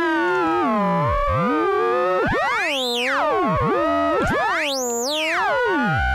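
Ring-modulated synthesizer tone from a Fonitronik MH31 VC modulator, fed a sine-wave carrier and a triangle-wave modulator. Both oscillators are being retuned by hand, so the tone's inharmonic sidebands glide up and down and cross each other. Twice, about three and five seconds in, the whole cluster sweeps sharply up and back down.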